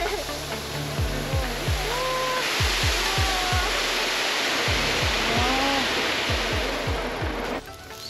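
A steady rush of harvested adzuki beans pouring from a harvester's discharge hopper into a mesh bin, cutting off shortly before the end. Background music with a regular beat plays over it.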